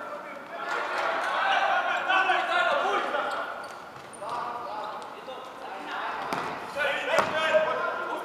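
Several voices call out in a large sports hall, and a futsal ball thuds on the wooden floor about seven seconds in.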